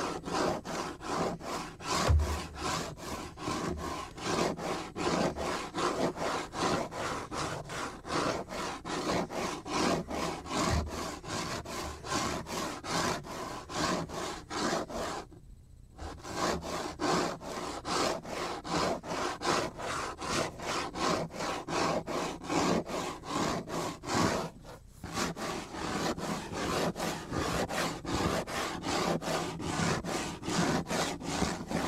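Cutting board rubbed in rapid, evenly repeated back-and-forth strokes, about three a second, with two brief pauses, one about halfway through and one about five seconds before the end.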